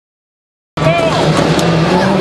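Rally car engine running at speed over a cheering crowd, cutting in suddenly about three-quarters of a second in, with rising and falling high whoops above the steady engine note.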